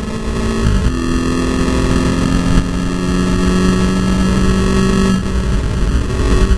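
Volkswagen Scirocco Cup race car engine heard from inside the cabin, running hard under a heavy rush of wind and road noise. The engine pitch dips briefly about a second in and changes again just after five seconds.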